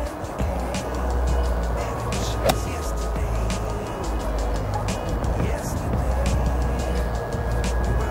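Background music, with a single sharp click of an iron striking a golf ball about two and a half seconds in.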